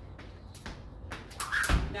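Jump rope slapping a concrete floor and shoes landing, in a few separate taps with the heaviest thud near the end.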